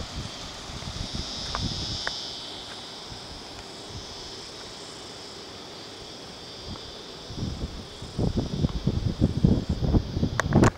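Steady high-pitched insect chorus, with wind buffeting the microphone in gusts over the last two or three seconds.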